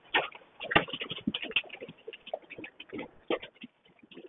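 Scattered light taps and clicks at an irregular pace, a few each second, with one sharper click about three quarters of a second in.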